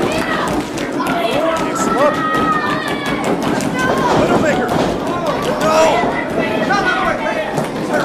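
Live crowd of spectators shouting and cheering, many voices overlapping without a break.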